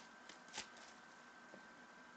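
Faint handling of 2014 Panini Prizm World Cup trading cards as they come out of a freshly opened pack, with a soft card flick about half a second in, then near silence with a faint steady high tone.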